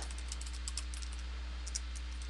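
Computer keyboard being typed on: a quick, uneven run of light key clicks over a steady low hum.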